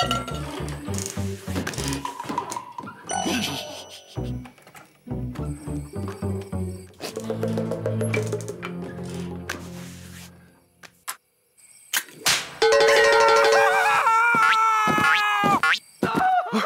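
Cartoon background music of short, low, evenly spaced notes, falling away to a near-silent pause; then a man's long, loud yell of pain as a mousetrap catches him, wavering and bending down in pitch at the end.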